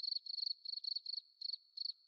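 Faint cricket chirping: short high chirps, about five a second in an uneven rhythm.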